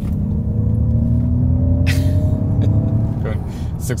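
Ford F-150 Lightning's software-generated propulsion sound, a throaty V8-style engine note played inside the cabin, rising steadily in pitch as the electric truck accelerates hard to 60 mph, over a loud low rumble.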